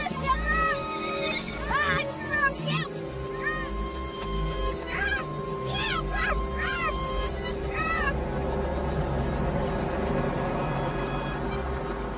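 A film soundtrack played in reverse: music with held notes over a low drone. Until about seven seconds in, a run of short, high calls rises and falls over it, then the music goes on alone.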